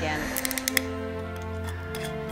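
A quick run of small sharp clicks as the foil and metal screw cap of a wine bottle are worked at the neck by hand, over steady background music.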